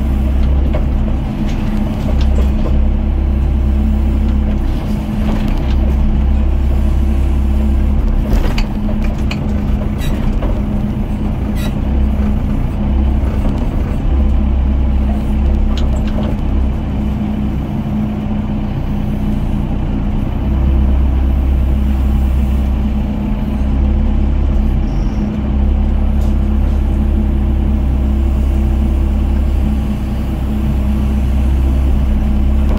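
Doosan DX55 mini excavator's diesel engine running steadily under hydraulic load, heard from the cab, its low drone swelling and easing as the arm works. A few sharp knocks come in the middle as the bucket digs into broken concrete and brick rubble.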